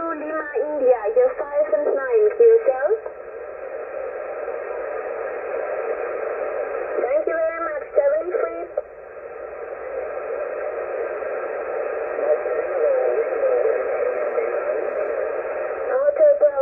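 Single-sideband voice signals on the 40-metre amateur band, heard through the Yaesu FT-991A's speaker with the narrow, tinny sound of radio audio. A stronger voice comes through for the first few seconds and again briefly about seven seconds in; the rest is weaker voices in band hiss.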